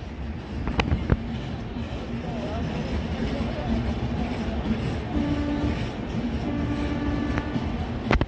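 Train rolling slowly into the station with a steady low rumble and two sharp clacks of wheels over rail joints about a second in; a faint held tone sounds in two stretches in the second half, with voices of bystanders.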